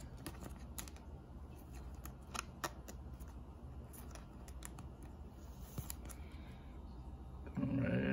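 Faint light clicks and taps of a trading card in a plastic holder being handled and stood up on a small acrylic stand, with two sharper clicks about two and a half seconds in.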